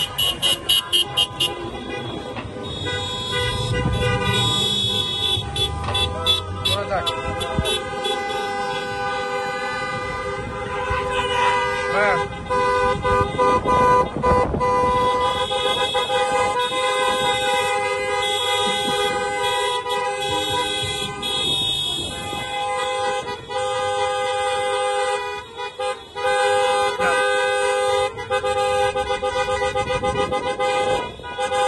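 Many car horns honking together in slow traffic, some held as long steady blasts and others tapped in rapid beeps near the start.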